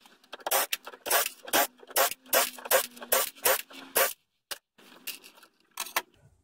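Cordless driver with a Torx T27 bit running out the already loosened bolts of the solenoid retaining bracket on a ZF 6HP26 automatic transmission's valve body: a quick run of about ten short, scratchy bursts over four seconds, then a few fainter ones near the end.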